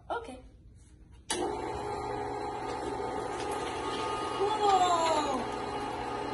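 Electric meat grinder switched on about a second in, its motor then running steadily with a hum while grinding soaked chickpeas and herbs.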